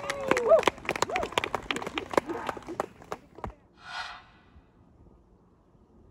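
A small golf gallery clapping, with a voice cheering at the start; the claps thin out and stop about three seconds in. A short hiss follows around four seconds, then quiet.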